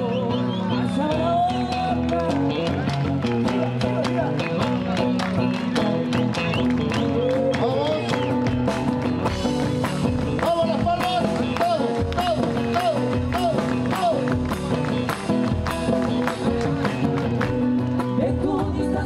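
Live band playing an instrumental passage of a chacarera: a guitar melody with wavering, bent notes over strummed acoustic guitar and drums keeping a steady beat.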